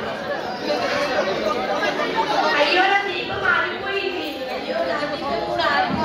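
A group of people talking at once: overlapping chatter of several voices.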